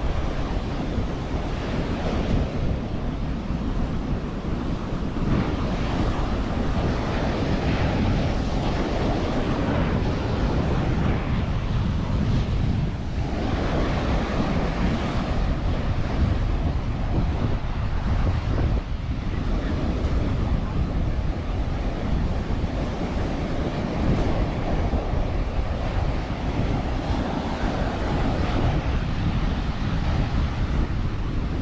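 Ocean surf breaking and washing up the beach, a continuous rushing that swells and eases with the waves, with wind rumbling on the microphone.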